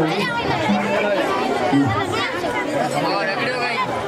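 Crowd chatter: many people talking at once, with several voices overlapping and no single speaker standing out.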